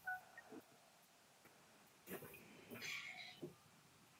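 Near silence on an open call line, with a few faint brief sounds between about two and three and a half seconds in.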